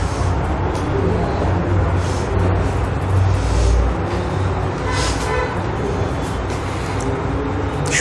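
Steady low rumbling background noise, with a brief pitched tone about five seconds in.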